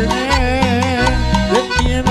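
A guaracha band playing live: a wavering accordion melody over bass notes and percussion, in the instrumental gap between sung lines.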